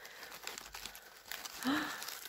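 Shredded paper box filler and a clear soap wrapper rustling and crinkling as a hand digs into the box and lifts out a wrapped bar of soap, an irregular crackle of small ticks. A brief hum of voice near the end.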